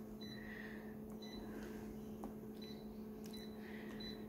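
Faint short, high beeps from a photocopier's touchscreen panel as its buttons are tapped, several over the four seconds, over a steady low hum from the machine.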